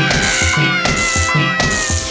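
A cartoon fox's long, drawn-out yowl of pain while being electrocuted, slowly falling in pitch, over background music with a steady beat.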